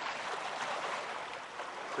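Seawater washing over and around a rock in the shallows, a steady even rush of water.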